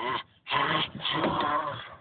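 A child's wordless, strained vocal sounds: a short cry, then a longer rough cry of over a second that fades out near the end.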